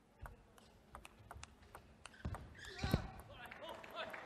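Table tennis ball clicking sharply and irregularly off bats and table during a fast doubles rally, several hits a second. A loud shout about three seconds in is the loudest sound.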